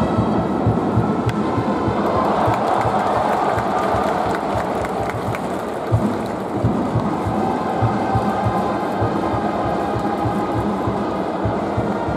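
Stadium cheering section with drums beating about twice a second under a brass melody. A single sharp crack comes about a second in as the bat meets the pitch. Crowd cheering then swells for a couple of seconds as the ball is put in play.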